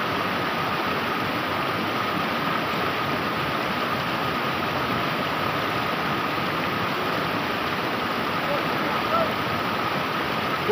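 River rapids rushing steadily over rocks, a constant, even sound of fast-flowing water.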